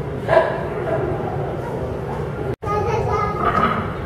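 Indistinct background chatter of visitors in a reverberant museum hall, with a short, loud, high voice-like yelp about a third of a second in. Near the middle all sound briefly cuts out for a split second at an edit.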